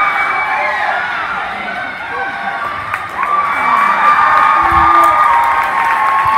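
Spectators cheering and shouting for swimmers during a race, many voices at once, growing louder about three seconds in.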